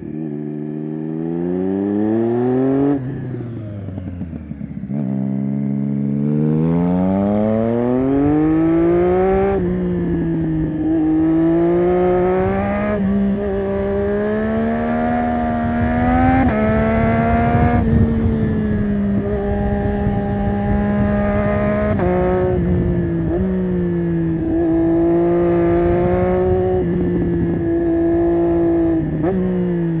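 Triumph Street Triple 675 Rx's inline three-cylinder engine through an SC-Project Conic exhaust, under way: revs falling off over the first few seconds, then climbing through several quick upshifts from about five seconds in, then pulling steadily with brief throttle lifts. Wind rushes over the helmet microphone throughout.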